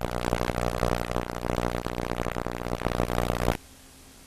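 Audio from a children's TV channel: a loud buzzing, drone-like sound holding one steady low pitch. It cuts off abruptly about three and a half seconds in as the channel is switched, leaving only faint hiss.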